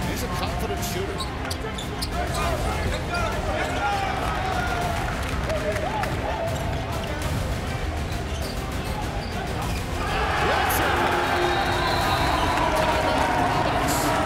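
Basketball game sound: a ball bouncing on a hardwood court and players' voices over background music. About ten seconds in, a louder, denser wash of noise and voices comes in.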